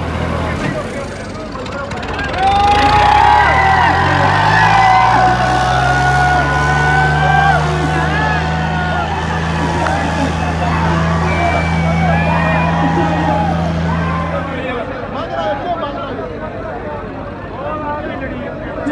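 Tractor diesel engines revving up a couple of seconds in, then running hard and steady under load in a tochan tractor tug-of-war between a Swaraj 855 and a Sonalika 60 RX turbo, before cutting off abruptly near the end. A crowd shouts and cheers over them.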